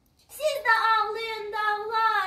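A young girl singing one long held note that starts after a brief pause, her voice settling onto a steady pitch.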